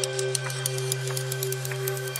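Sampled Nepalese bell processed in Steinberg Groove Agent 5: a sustained electronic drone of the bell's tone, a low steady hum under a wavering higher ring, with a rapid, uneven patter of high clicks from its split-off strike transients.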